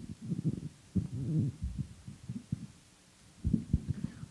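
Microphone handling noise: irregular low thumps and rubbing, muffled with no treble, with a lull shortly after the middle.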